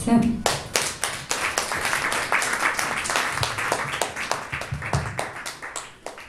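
Audience applauding, many hands clapping together, the clapping thinning and fading away near the end.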